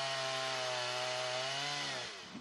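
Gasoline chainsaw cutting through a thick fallen tree trunk, its engine running at a steady high pitch that dips slightly in the second half.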